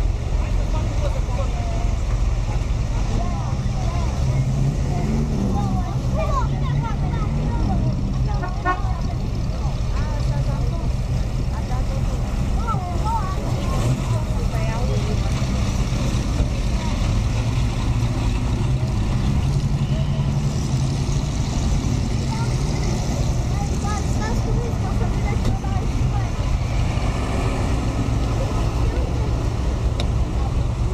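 Several vintage car engines idling with a steady low rumble, under scattered distant chatter of voices.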